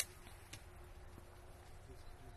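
Pruning shears snipping olive twigs: a sharp click right at the start and another about half a second later.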